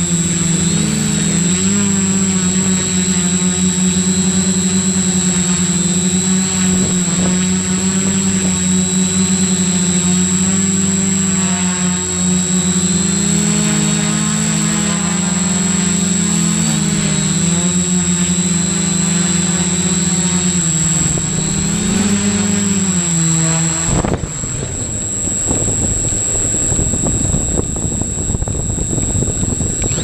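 Homemade quadcopter's electric motors and propellers buzzing in flight, the pitch wavering up and down as it manoeuvres, with a steady high whine above. Near the end the buzzing cuts off abruptly, leaving a rough rushing noise.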